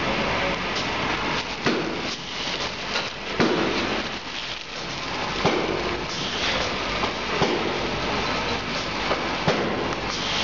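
Plastic shrink film rustling and crinkling as it is handled and threaded on a shrink-wrap machine, with scattered small clicks and knocks.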